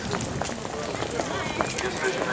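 Footsteps of a large crowd walking on paving stones, mixed with many people talking among themselves.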